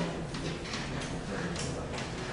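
Chalk on a blackboard: a few short taps and scratchy strokes as a diagram is drawn, the first sharp tap right at the start. A low steady hum of the room lies underneath.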